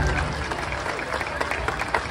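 Audience applauding, many hands clapping in a dense, even patter.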